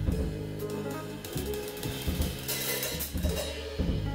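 Live jazz from a piano, double bass and drums trio. The drum kit's cymbals and hi-hat are to the fore over low double bass notes.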